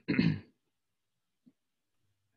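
A man's single short throat-clearing cough, lasting about half a second at the very start.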